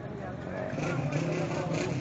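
Small motorcycle engine running close by, growing louder about half a second in, over the chatter of a crowd.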